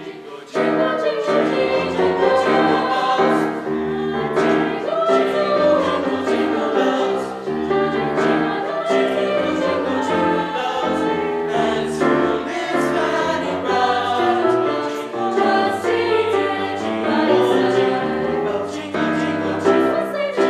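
A mixed choir of young men and women singing a Christmas song together in parts, the voices continuous throughout.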